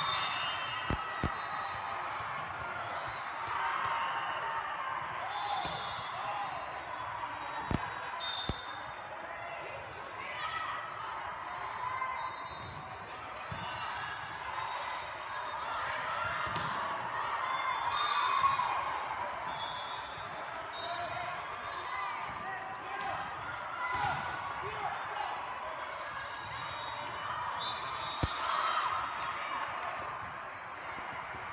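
Volleyball tournament din in a large hall: many overlapping voices of players and spectators, with the sharp slaps of volleyballs being hit and bouncing on the court floors. The loudest slaps come about one second and eight seconds in.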